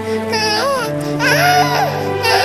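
An infant crying in short wails that rise and fall in pitch, over background music with long held notes.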